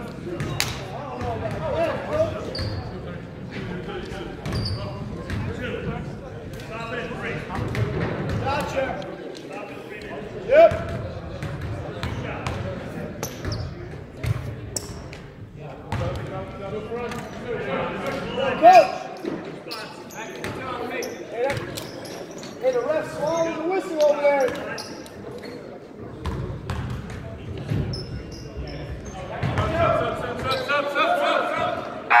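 A basketball bouncing on a hardwood gym floor, echoing in a large hall, with players' voices calling out. Two louder sharp knocks stand out, about a third and two-thirds of the way through.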